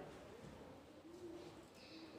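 Near silence: room tone with two faint, low calls from a bird.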